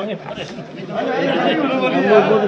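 Several men talking over one another in a close group, a mixed chatter of overlapping voices.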